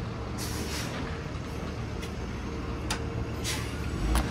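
Steady outdoor background hum like traffic or a building's air-handling unit, broken by two short hissing bursts and a couple of sharp clicks as the building's glass entrance doors are passed through.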